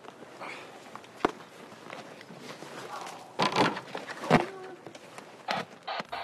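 Dry leaves and twigs rustling and crackling as a bear cub is set back into a den of brush and leaf litter. There is a sharp click about a second in and louder crunching bursts in the second half.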